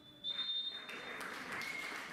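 A referee's whistle blown in one long blast of about a second, the full-time whistle, then spectators clapping and applauding.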